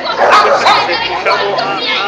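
A quick run of loud, high-pitched yelps and cries with sliding pitch, dog-like in sound, with no words in them.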